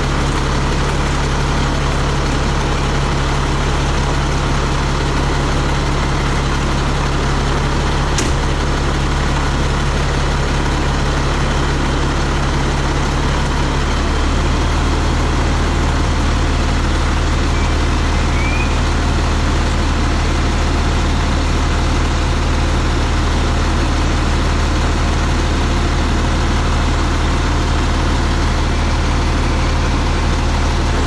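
Fire truck engine running steadily, a loud low drone whose tone shifts about halfway through, with a single click near the eighth second.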